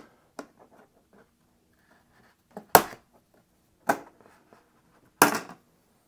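Small screwdriver prying the bottom housing off an M4 Mac mini: faint scraping and ticks, then sharp snaps about three seconds in, at about four seconds and again past five seconds as the housing pops loose. The first snap is the loudest.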